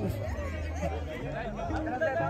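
Several people talking at once, with music and its low held bass notes playing underneath.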